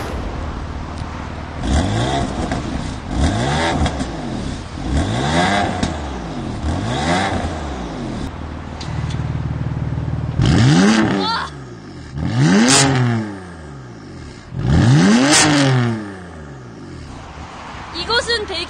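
BMW M4's twin-turbo 3.0-litre straight-six, tuned to stage 3 with a JB4, revved from idle: four short rev blips with the exhaust valves closed, then after a few seconds of idle, three longer and louder revs with the valve exhaust open.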